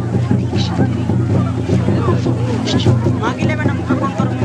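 A crowd of many overlapping voices over a loud, steady low rumble.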